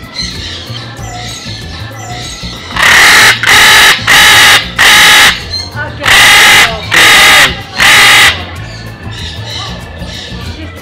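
Blue-and-gold macaw on a person's shoulder screeching seven times in quick succession, right beside the microphone, loud harsh calls each about half a second long, from about three seconds in to just past eight.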